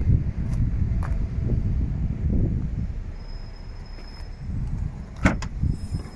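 A low, uneven rumble, then about five seconds in two sharp clicks close together as the tailgate latch of a Ford Fiesta hatchback releases and the tailgate is lifted.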